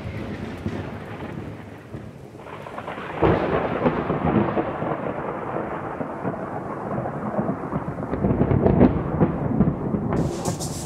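Thunderstorm sound: a rolling rumble of thunder with rain hiss. It fades over the first couple of seconds, then swells again with a fresh crack about three seconds in and keeps rolling.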